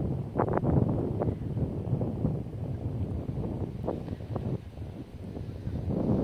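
Wind buffeting the microphone, an uneven low rumble, with a few brief sharper sounds over it.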